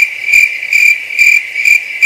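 Cricket chirping sound effect: a loud, steady, high trill that swells about twice a second. This is the stock "crickets" gag for an awkward silence.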